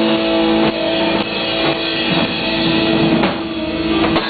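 Live country band playing the instrumental close of a song: guitars holding notes over a drum kit, with several drum hits and no singing.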